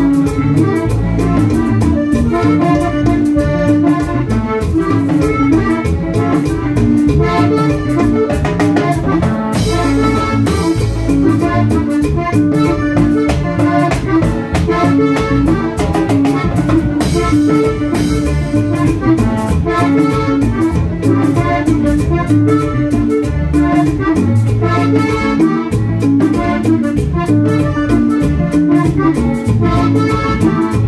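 Live amplified instrumental passage of Panamanian música típica: a button accordion plays the melody over a drum kit and low bass notes, with cymbal crashes about ten seconds in and again around seventeen seconds.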